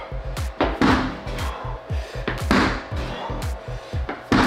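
Background music with a steady beat and sliding bass. Under it, a ball is slammed sideways onto a rubber gym floor twice, about a second and a half apart, during medicine-ball side slams done with a bouncy substitute ball.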